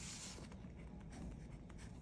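Faint scratching of writing, a pen moving across a writing surface in a small room.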